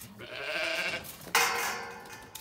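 Zwartbles sheep bleating: a wavering bleat in the first second, then a sudden louder, harsher call about a second and a half in.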